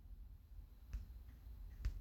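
Two faint, sharp clicks about a second apart, over a low background rumble.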